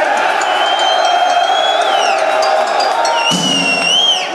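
Large concert crowd cheering, with two long, shrill whistles: one from about half a second in to about two seconds, the other near the end, each dropping in pitch as it stops.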